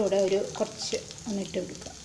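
Hot oil sizzling in a nonstick pan as chopped pieces are dropped into a tempering of mustard seeds and dried red chillies; a woman's voice talks over it in the first part.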